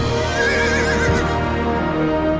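A horse whinnies once, a wavering high call of under a second near the start, over sustained orchestral film score.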